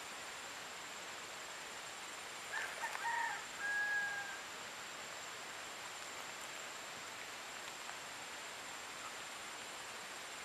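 A rooster crowing once, a call of about two seconds that opens in short broken notes and ends on a longer held note, over a steady background hiss.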